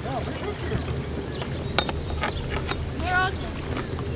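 Wind rumbling steadily on the microphone by open water, with a few sharp claps through the middle and a voice calling out near the end.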